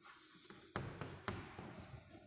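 Chalk writing on a blackboard: scratchy strokes, then a few short sharp taps in the second half.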